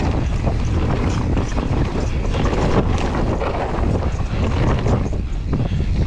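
Wind buffeting the microphone of a camera on a mountain bike descending a dirt trail, over tyres rolling on dirt and gravel and the bike rattling with many small knocks.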